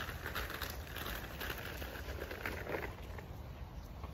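Footsteps rustling and crunching irregularly on a leaf-covered forest path, over a low rumble of wind or handling on the phone's microphone.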